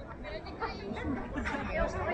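Several people chattering in the background, voices overlapping with no clear words.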